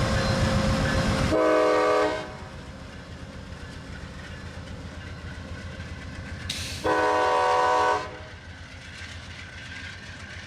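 Locomotive air horn sounding two blasts, each about a second long and a chord of several tones, the first about a second and a half in and the second about seven seconds in. Before the first blast a loud low train rumble cuts off; between and after the blasts the railcars roll by more quietly.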